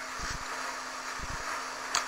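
Room tone: a steady background hiss with a faint low hum and no distinct event.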